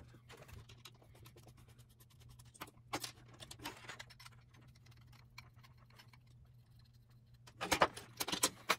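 Faint scattered clicks and light rattling as wires and spade connectors are handled and a small perforated-metal SCR voltage controller box is picked up, then a short run of louder clicks near the end as the box is set down on the bench. A faint steady low hum runs underneath.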